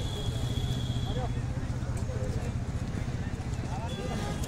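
Busy roadside ambience: a motorcycle engine running nearby as a steady low drone, with faint voices of a crowd.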